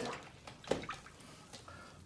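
Quiet handling sounds with one brief knock about a third of the way in, as a brush and paint are picked up.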